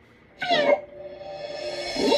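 A short, high yelp with a falling pitch about half a second in, like a cartoon dog's bark. Music then comes in and grows louder.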